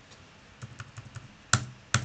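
Computer keyboard: a quick run of about six light key taps, the characters " (1-5)" being deleted from a spreadsheet cell, then two much louder, sharper strikes about half a second apart near the end.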